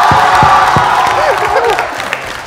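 A man yells loudly and long over studio audience cheering and music with a steady beat. The yell fades about a second in, giving way to laughing voices.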